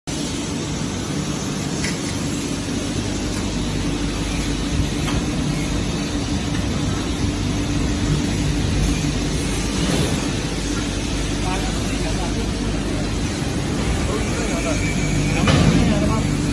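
Industrial tunnel parts washer with a wire-mesh conveyor running: a steady, loud machine noise with a low hum.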